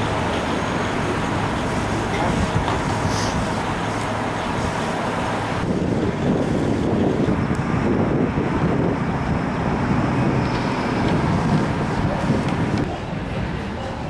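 Steady vehicle and road-traffic noise, with sudden changes in the mix about six seconds in and again near the end.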